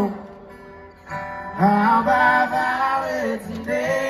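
Live concert music of strummed acoustic guitars with singing. It drops quieter for about the first second, then the guitars come back in and the singing resumes about a second and a half in.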